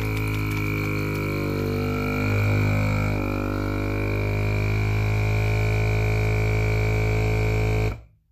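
FoodSaver vacuum sealer's pump running with a steady drone as it draws the air out of a bag, its pitch wavering briefly about two seconds in, then cutting off suddenly near the end as the cycle finishes.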